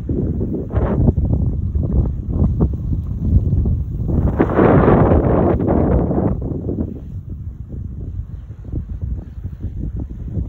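Wind blowing across the phone's microphone, a low rumbling rush that swells into a stronger gust about four seconds in and eases off again by about six and a half seconds.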